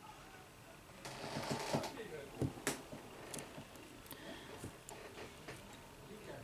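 Handling noise of tweezers and small plastic and metal phone parts being fitted into a smartphone frame: a run of light clicks and scrapes, with the sharpest click a little before halfway and scattered lighter clicks after.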